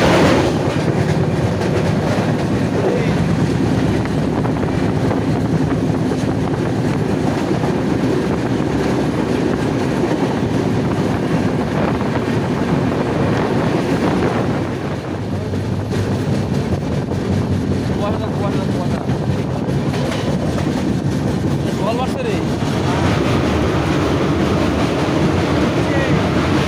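Indian Railways passenger train running at speed, heard from an open coach doorway: a steady rumble of wheels on rails mixed with rushing air. A goods train passes on the next track about halfway through.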